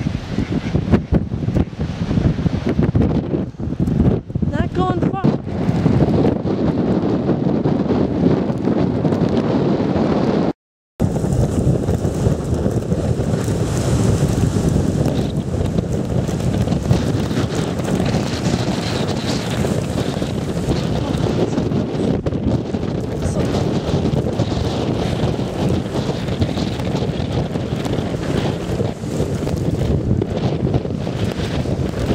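Strong gale-force wind buffeting the microphone, a dense steady rush; the sound cuts out for a moment about eleven seconds in.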